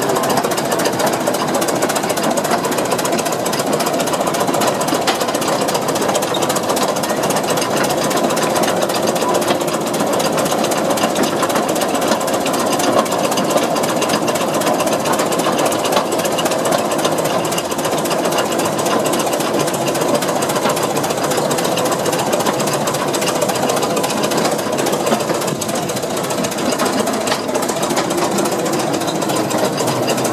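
A 1918 Holt 75 crawler tractor's large four-cylinder petrol engine running steadily, with a rapid, even mechanical clatter.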